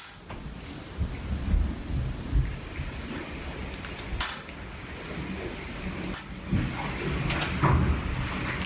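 Low rumbling handling noise with a few sharp clicks, about four seconds in, six seconds in and again near the end, as a freshly stuffed sausage casing is handled and pricked at the stuffer's tube.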